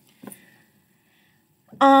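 A single light knock from a hardcover book being handled, then quiet. Near the end comes a woman's drawn-out "um".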